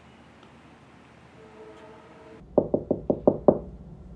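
Six quick knocks on a door, about six a second, each ringing briefly.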